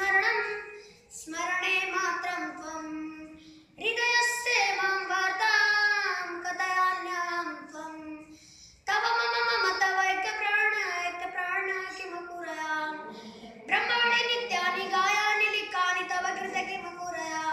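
A young boy singing solo and unaccompanied, a Bollywood song melody with Sanskrit lyrics, in long phrases with brief pauses for breath between them.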